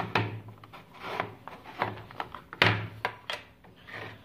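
Handling sounds on a wooden desktop as a pocket digital scale and its plastic lid are set down and slid: a series of sharp knocks and taps with some rubbing, the loudest a little past halfway.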